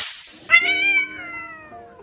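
Domestic cat giving one long meow about half a second in, rising slightly in pitch and then sliding down as it fades over about a second. A sharp click comes at the very start.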